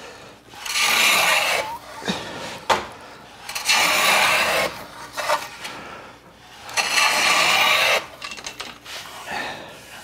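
Stanley No. 8 jointer plane taking three long strokes along the edge of a figured wood board, each a rasping shave of about a second, with light knocks of the plane between strokes. The plane is cutting against the grain, which on figured wood risks tearout.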